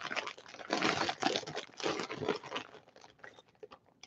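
Plastic zip-top bag of jewelry crinkling as it is handled, in two or three rustling bursts that trail off into a few faint clicks.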